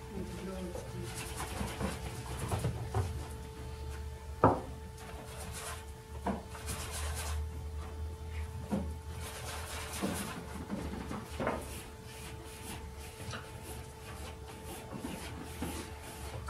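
Scattered light knocks and taps from painting tools being handled at the easel, the sharpest about four and a half seconds in, over a steady faint hum.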